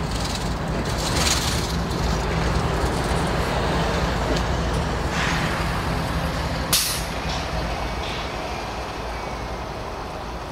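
Diesel-electric freight locomotive running as a light engine moving away, its low engine drone fading toward the end. Hisses of air come about a second in and about five seconds in, and a short, sharp burst of air comes near seven seconds.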